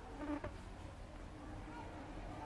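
Insect buzzing: a low, wavering drone that grows louder briefly just before half a second in, with a small click at the same moment.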